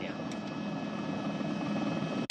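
Steady helicopter engine and rotor noise with a few held, high whining tones over it.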